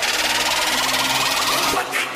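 Electronic whoosh sound effect in an intro music sting: a loud, buzzing rush of noise with a rising sweep, dipping briefly near the end.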